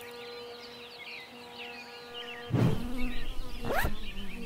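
A flying insect buzzing in one steady tone while birds chirp over it. About two-thirds of the way in the sound turns much louder, with a low rumble and a sweep rising in pitch near the end, like the insect passing close.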